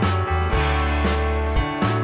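Instrumental background music led by guitar over a steady bass line, with chords struck in an even rhythm about twice a second.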